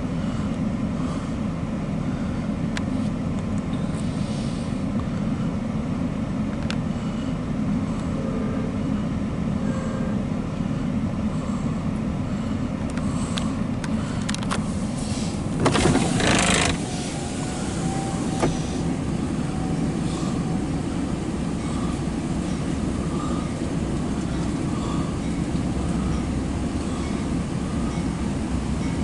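Steady low rumble of an approaching Amtrak GE Genesis diesel locomotive and its train. A brief loud hiss lasting about a second comes just past the middle.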